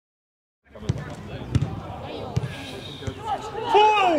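Silent for the first moment, then outdoor pitch sound: a few sharp thuds of a football being kicked about a second in, and again, followed by players shouting to each other near the end.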